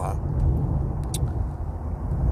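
Steady low rumble of a car driving at highway speed, heard from inside the cabin: engine and tyre noise on the road.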